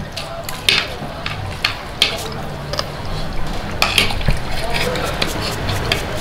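Metal spoon scraping and clicking against a plate while eating, a string of short irregular scrapes and clinks, with faint voices murmuring underneath.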